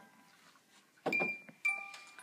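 The last note of a snow-globe music box fading away. About a second in come two sharp knocks about half a second apart, each with a ringing tone.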